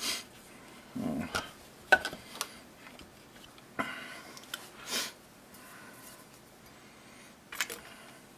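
Scattered light clicks and knocks as a polymer pistol frame is handled and set down on bench-block pads, and tools are picked up from the mat.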